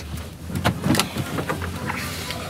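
Low steady rumble inside a car, with several short knocks and rustles over it.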